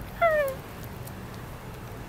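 A woman's high-pitched cooing "oh", falling in pitch, once in the first half-second, then a steady low room hum.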